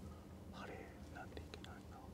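Faint whispered speech from people conferring off-microphone, with a few light clicks.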